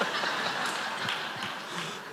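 Theatre audience laughing at a joke, a dense wash of many voices that slowly dies away over the two seconds.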